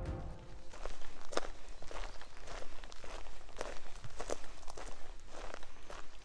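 A hiker's footsteps on a dirt forest trail, at an even walking pace of a step every half-second or so.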